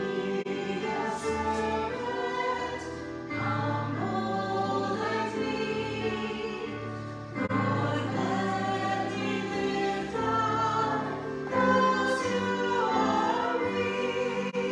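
A small group of women singing a sacred song in parts, with keyboard accompaniment, holding long notes that change about every second.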